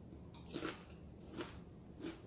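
A person chewing a mouthful of crunchy food, with three faint crunches: one about half a second in, one near a second and a half, and one at the end.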